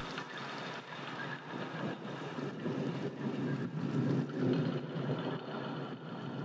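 Low, steady rumbling room noise heard from inside a parked car's cabin, with faint irregular bumps of a handheld phone camera being moved.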